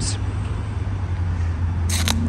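Steady low rumble of road traffic, with a brief hiss just before the end.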